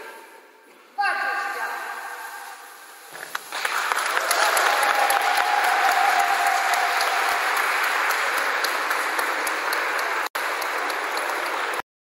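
A group of people clapping at the end of a group push-up set, starting about three and a half seconds in and stopping abruptly near the end. A single held tone sounds over the clapping for a few seconds.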